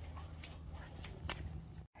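Quiet steady low hum with a couple of faint ticks and shuffling sounds; the sound cuts out for an instant near the end.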